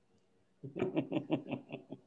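Laughter: after a moment of near silence, a run of quick, evenly spaced "ha-ha-ha" pulses starts about half a second in.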